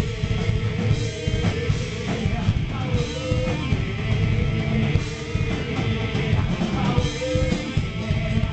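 Hard rock band playing live: distorted electric guitars and drums with a male singer singing over them.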